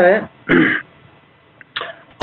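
One spoken word ends, then a short throat clearing about half a second in, followed by a pause.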